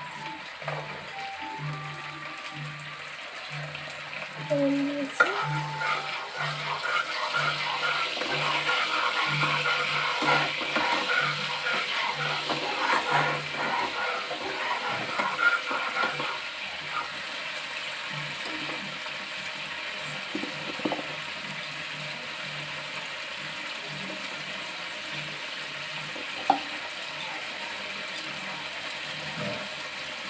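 Food sizzling in hot oil in a non-stick frying pan, with a spatula stirring and scraping through it for several seconds in the middle. The sizzle then settles to a steadier hiss.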